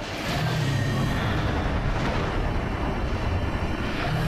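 Deep, continuous rumbling roar with a heavy low drone: cinematic sound design for the towering Shadow Monster in a storm sky. It swells up just after the start and then holds steady.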